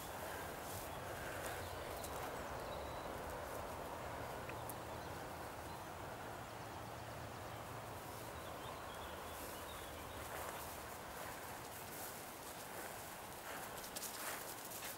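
Steady rushing background noise in an open field, with a few faint short chirps, likely birds, and scattered soft clicks.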